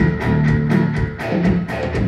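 Live rock band playing an instrumental passage: electric guitar and bass over drums, with a steady, repetitive beat about four strokes a second.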